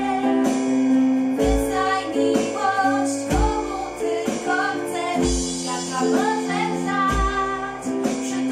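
Two women singing a Polish pop love song together, accompanied by digital piano, strummed acoustic guitar and drums, with a low beat about every two seconds.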